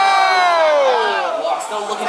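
A long, drawn-out excited shout of 'ohhh', falling steadily in pitch over about a second and a half, over crowd noise.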